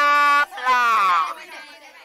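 A high-pitched voice gives two drawn-out syllables, the first held on one pitch and the second rising and then falling, then trails off into faint short sounds.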